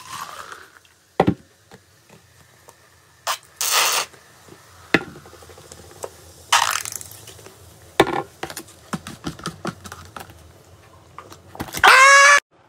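Cola and a second drink poured from plastic bottles into a plastic cup with a short fizzy hiss. Then come a few sharp plastic clicks and two short rushing squirts from a plastic squeeze bottle, with the fizz crackling faintly in between.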